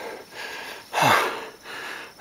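A person breathing hard close to the microphone, with a loud gasp about a second in whose voice drops quickly in pitch, and softer breaths before and after. He is out of breath from a hard uphill hike.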